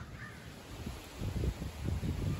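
A faint, distant raven caw right at the start, followed by a low rumble in the second half.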